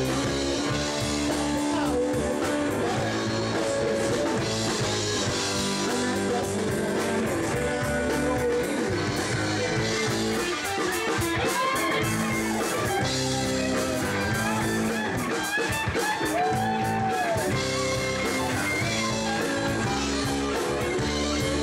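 Live blues-rock band playing: electric guitars, bass guitar and drums, with a lead electric guitar bending notes in an instrumental passage.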